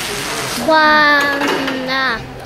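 Speech only: a girl's voice, drawing out one long hesitant vowel that starts under a second in and slowly falls in pitch.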